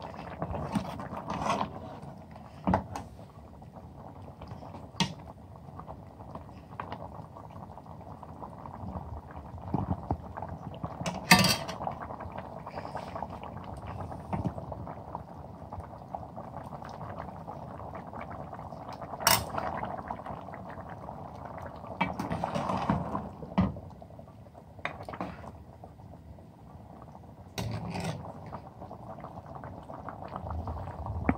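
Mutton karahi simmering in a steel pot, a steady low bubbling, with a metal ladle clinking and scraping against the pot every few seconds as tomato skins are skimmed out of the sauce.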